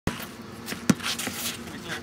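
A basketball striking a hard surface: one loud thump about a second in, with lighter knocks just before and after it.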